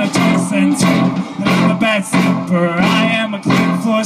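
Live rock band playing, with guitars strummed in a steady rhythm over sustained chords.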